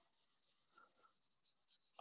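Felt-tip highlighter scribbling on paper: faint, rapid, even back-and-forth strokes as a region is shaded in.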